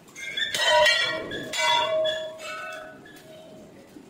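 Hanging metal temple bell struck three times, about a second apart. Each stroke rings on and fades, and the last is softer.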